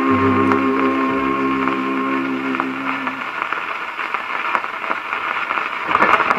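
The orchestra's last held chord on a 1934 78 rpm shellac record dies away about three seconds in. What follows is the record's surface noise: a steady hiss with crackles and clicks from the stylus in the worn grooves.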